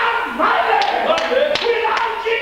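A man's loud speech over a microphone, with four sharp taps in the second half, about a third of a second apart.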